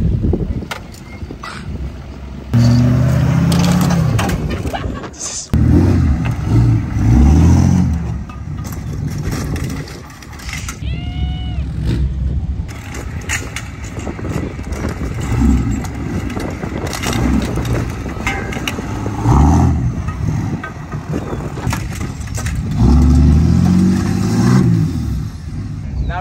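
Lifted pickup trucks driving over a collapsed metal canopy tent frame to flatten it, their engines revving in several bursts, with sharp crunches and rattles of the bent tubing in between.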